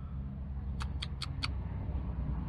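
A steady low hum with four quick, high-pitched chirps in a row about a second in.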